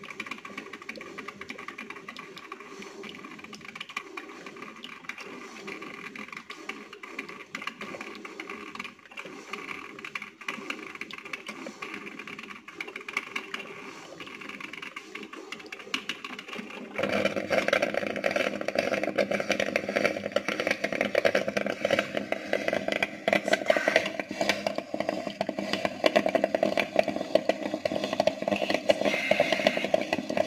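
Electric drip coffee maker brewing, a steady hissing and sputtering as the water heats and passes through. About seventeen seconds in it suddenly grows louder and rougher and stays so.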